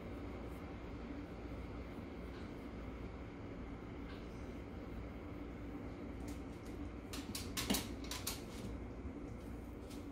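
Quiet room with a steady low hum; about seven seconds in, a short cluster of light clicks and knocks as a corgi paws at its recordable talk button by the metal food bowl, pressed too lightly to play its word.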